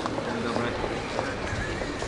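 Pedestrian-street ambience: a steady murmur of distant voices with a few faint knocks from passing steps on the paving.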